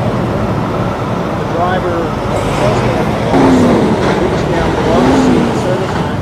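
Indistinct voices of several people talking over a steady rumble of vehicle engines and road traffic.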